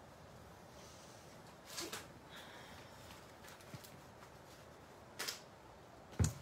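Quiet room tone with two brief rustling scuffs, about two seconds in and again about five seconds in, from materials being handled and moved on a craft work table.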